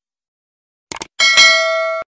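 Subscribe-button sound effect: two quick mouse clicks about a second in, then a bright bell ding that rings on, slowly fading.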